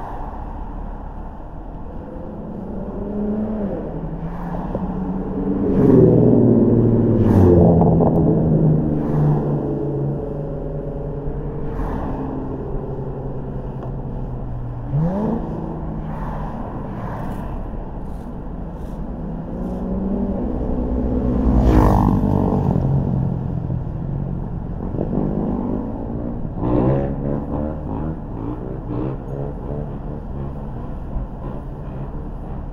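A car driving along a street: engine hum and road noise, the engine note rising and falling as the car speeds up and slows, loudest about six seconds and twenty-two seconds in. A few short knocks are heard along the way.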